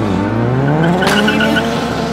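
Mitsubishi Lancer's engine revving up as the car pulls away, its pitch rising steadily for about a second and a half and then levelling off. A brief chirping tyre squeal comes about a second in.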